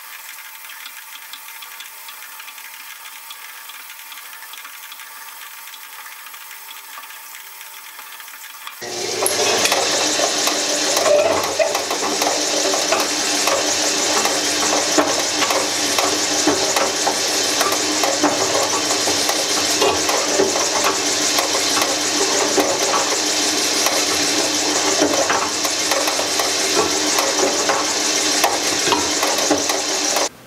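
Drill press drilling a hole into the end of a white plastic (Delrin) block held in a vise. The press runs steadily for about nine seconds, then the bit bites into the plastic and a much louder cutting noise with many small ticks takes over and carries on.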